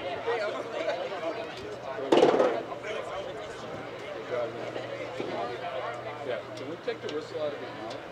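Players' and onlookers' voices calling and chattering across the field, with one louder call about two seconds in.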